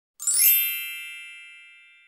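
A chime sound effect: a quick rising shimmer about a fifth of a second in, then a cluster of high ringing tones that slowly fade away.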